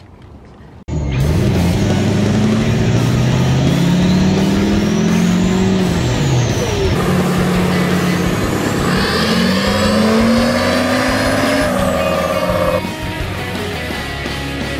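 Duramax turbo-diesel V8 pickup run at full throttle on a chassis dyno. The engine note climbs while a turbo whistle rises and falls twice, and the engine falls away near the end.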